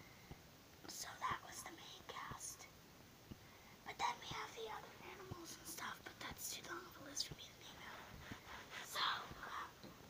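A child whispering in short, quiet bursts.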